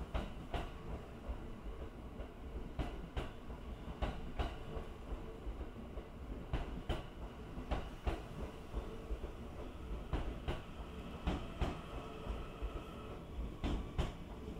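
The Train Suite Shiki-shima luxury sleeper train (JR East E001 series) rolling past a station platform: a steady low rumble, with the wheels clacking over a rail joint in quick pairs, a pair about every second.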